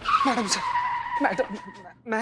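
A sudden screech that holds one high tone, dipping slightly at first and then steady, for nearly two seconds. Brief speech sounds beneath it.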